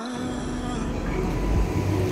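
Low, steady rumble of vehicle traffic under a concrete canopy, growing slowly louder.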